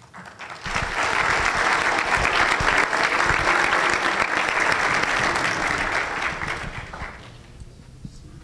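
Audience applauding, swelling within the first second, holding steady, then dying away near the end.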